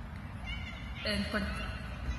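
A woman's voice starting a drawn-out "and" about a second in, over a steady low background rumble.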